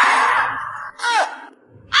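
A man's long, loud wail of disgust that fades over about the first second, then a short cry falling in pitch about a second in.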